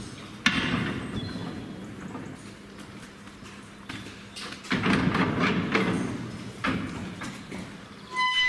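Steel cattle-handling gates and crush clanging and rattling as a cow is moved in and the gates are pushed shut. The loudest bang comes about half a second in, with more rattling and knocks from about the middle of the clip.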